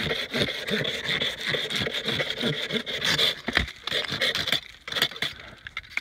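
Small hand saw cutting into an ice brick with quick back-and-forth rasping strokes, trimming its edge. The sawing thins out and stops about five seconds in.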